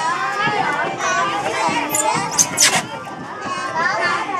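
A group of children talking and laughing over one another in excited chatter, with two brief, sharp, high-pitched bursts about two and a half seconds in.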